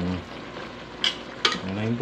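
A metal ladle stirring vegetables in an aluminium pot, clinking against the pot twice about a second in, over the soft sizzle of the vegetables cooking.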